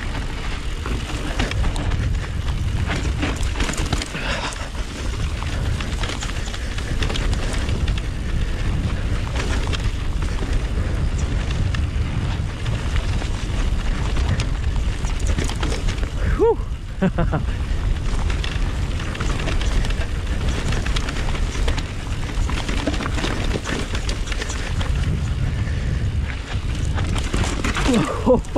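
Wind buffeting the microphone of a camera on a full-suspension electric mountain bike, with a steady rumble of tyres and frequent knocks and rattles as the bike rides down rough, rocky singletrack.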